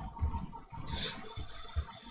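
Computer keyboard being typed on: a few irregular quiet keystrokes.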